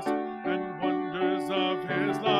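Church special music: a solo singer holding notes with vibrato over instrumental accompaniment.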